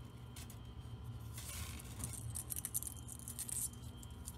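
Faint handling sounds of thin craft wire being fed into a glitter Christmas-ball ornament: a brief scratchy hiss about a third of the way in, then a run of small clicks and scrapes, over a low steady hum.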